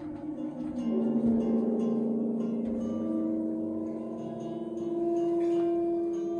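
Large Italian Grotta Sonora gong sounded with a small ball-tipped friction mallet drawn across its face, drawing out sustained, overlapping tones that shift in pitch and swell about a second in. The player likens this sound to the voices of whales.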